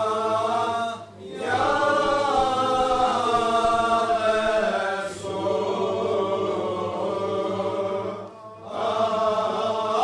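Group of dervishes chanting the zikr together in sustained, melodic phrases, with two brief breaks, about a second in and near the end.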